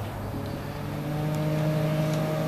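A steady low machine hum with a few evenly spaced overtones; about half a second in, the hum shifts to a slightly higher, fuller tone that then holds steady.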